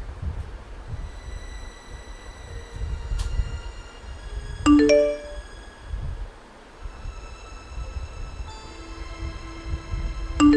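A chat-message notification chime sounds once about halfway through, two quick bright strikes that ring on briefly, over dark background music with a low rumble and long held tones.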